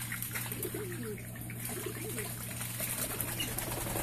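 Soft, low bird calls in a duck aviary: many short wavering notes, over a steady low hum and the hiss of running water.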